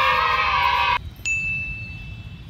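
A drawn-out shout held for about a second, cut off abruptly. Then a single high bell-like ding, an edited sound effect, rings on and slowly fades.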